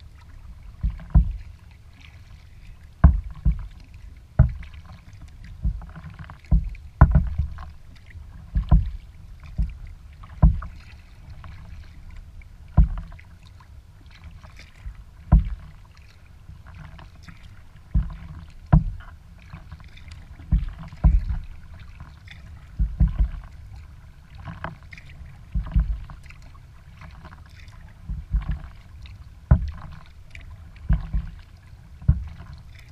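Kayak paddle strokes: a sharp splash or knock every second or two, carried through the hull to the deck-mounted camera, over a steady low rumble.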